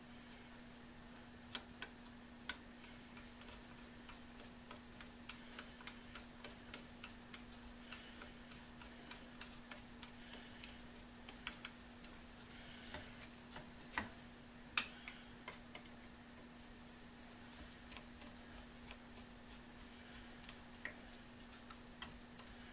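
Faint, irregular small metal clicks of a screwdriver turning a screw into a sheet-metal motor junction box, with a couple of sharper clicks a little past halfway. A steady low hum runs underneath.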